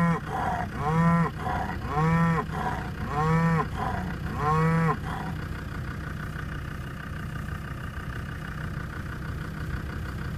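Cattle mooing: five short calls about a second apart, each rising and falling in pitch. After about five seconds the calls stop and a vehicle engine idles steadily.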